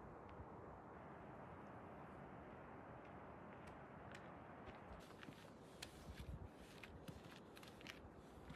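Faint steady hiss for the first few seconds, then, about five seconds in, a run of quick, faint, irregular crunching clicks: footsteps on a gravel and rock trail.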